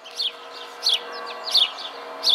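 A small songbird chirping outdoors: short, sharp, high chirps, each dropping in pitch, repeated about every two-thirds of a second.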